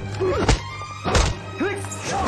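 Movie fight sound effects: two sharp punch impacts, about half a second and a little over a second in, with short grunts from the fighters over a music score.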